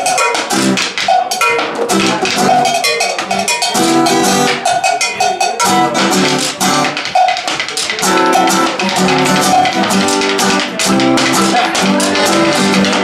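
Live instrumental passage by an acoustic trio: piano accordion and acoustic guitar playing over a busy rhythm of stick strikes on a wooden box drum and cowbell.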